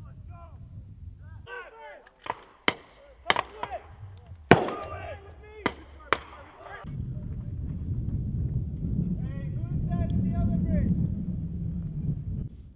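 Scattered gunshots: about seven sharp cracks over some four seconds, the loudest about four and a half seconds in with a brief echo. After them a steady low rumble sets in.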